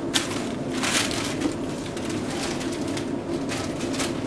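Paper towel crumpling and rustling in a few short bursts, the loudest near the start and about a second in, over a steady low hum.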